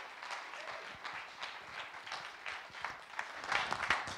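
Audience applauding in a hall, a dense patter of hand claps.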